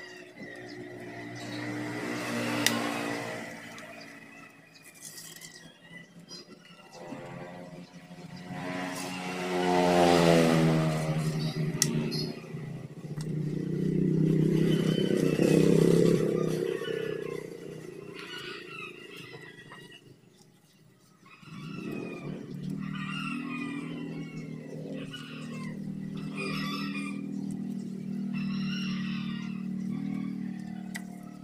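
Motor vehicles passing: an engine rising in pitch about ten seconds in and a louder pass around fifteen seconds in. After a brief lull, a steady engine hum continues with short repeated chirps over it near the end.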